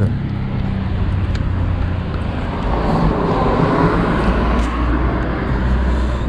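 Road traffic: a steady low engine hum from a motor vehicle, with broader road noise swelling around the middle as a vehicle passes.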